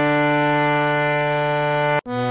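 Harmonium holding one steady note, Pa (D, with Sa at G) of Raag Bhoopali's descending scale, which cuts off sharply at the end.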